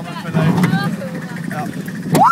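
Riders talking over the steady low rumble of a Gerstlauer bobsled roller coaster train running along its steel track.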